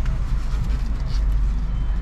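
Car engine idling, a steady low rumble heard from inside the cabin with the window open.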